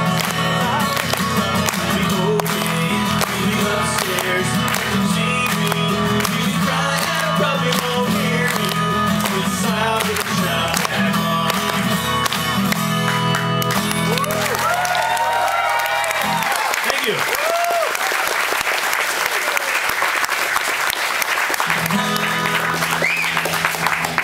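Strummed acoustic guitar with the audience clapping along in time; about two-thirds of the way through the guitar stops and the crowd breaks into applause and cheering, and the guitar sounds again briefly near the end.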